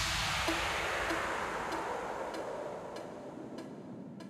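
The psytrance track's outro fading out: a hissing, reverb-like noise wash with faint echoes of a repeating synth note, about one every 0.6 s, dying away steadily.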